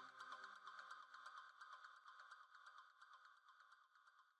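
Near silence: only a faint steady electronic tone that fades out.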